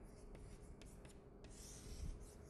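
Chalk scratching faintly on a blackboard: a few short strokes, then a longer scrape near the end as a line is drawn.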